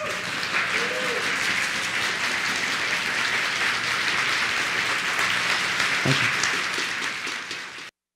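Audience applauding and cheering, with a couple of short whoops at the start; the applause cuts off abruptly near the end.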